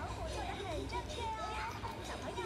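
High-pitched cartoon character voices from a Chinese-dubbed children's cartoon, sliding up and down without clear words.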